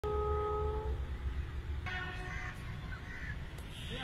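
Passenger train coach running slowly along the track with a steady low rumble, while a multi-note train horn sounds for about the first second and cuts off.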